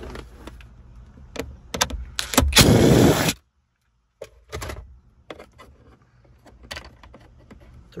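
Hand tools and hard plastic dash trim being handled while bolts are taken out of a car dashboard: scattered sharp clicks and knocks, a loud rasping burst lasting about a second, then a brief dropout to silence and more sparse clicks.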